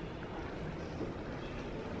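Steady low rumble of background ambience with no distinct event.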